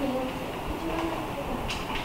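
Steady low rumble of room noise with faint, brief murmured voice fragments and a single short click near the end.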